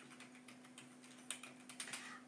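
Light typing on a keyboard: scattered faint key clicks, quickening into a short run of keystrokes in the second half.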